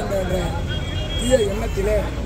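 A man speaking Tamil in a raised voice, heard over a steady low rumble of outdoor background noise.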